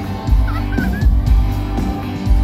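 A live rock band plays loudly over a concert PA with a steady drum beat, recorded from the audience on a phone. A brief wavering high sound rises over the music about half a second in.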